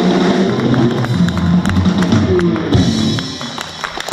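Live blues band playing: amplified harmonica over electric guitar and drums, getting quieter near the end.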